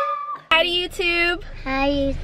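A high-pitched voice making short wordless squeals and calls whose pitch bends up and down; a cut about half a second in breaks off a held high note. A low rumble comes in near the end.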